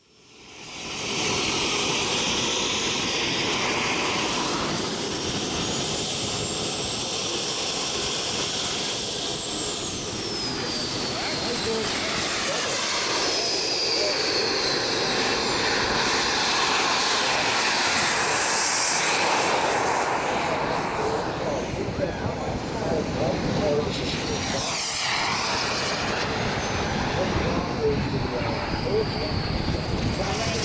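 Simjet 2300 model jet turbine in a MiG-15 radio-control jet running as the model rolls down the runway and takes off. It makes a steady rushing roar under a high-pitched whine that slides up and down in pitch. The sound fades in over the first second.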